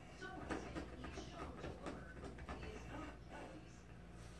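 A Chihuahua chewing and mouthing a plush toy: faint, irregular rustling and soft chewing clicks. The squeaker inside does not sound; she is hunting for it but cannot make it squeak.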